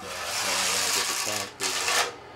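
Electric drill spinning a paint-mixer paddle through thinset tile mortar in a plastic bucket: a steady churning hiss that drops out briefly about one and a half seconds in, then picks up again.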